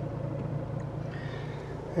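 Fiat Cinquecento's small petrol engine idling steadily, heard from inside the cabin as an even low hum.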